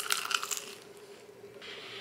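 A crunchy bite into a deep-fried empanada: the crisp pastry shell crackles and crunches for about half a second at the start, then dies down to faint sound.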